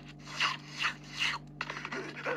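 Three short rasping rubs or scrapes, a little under half a second apart, over a faint steady low hum.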